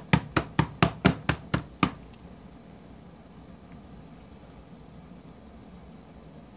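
Rapid knocks, about four a second, from a soap-filled silicone mold being tapped on the countertop to bring air bubbles up to the surface; they stop about two seconds in, leaving quiet room tone.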